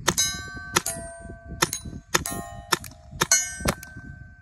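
Byrna TCR CO2-powered less-lethal launcher fired about seven times at an uneven pace, each sharp shot followed by a lingering metallic ring.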